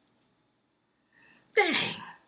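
Near silence for about a second, then a short breath and a woman's drawn-out exclamation, "Dang," falling in pitch.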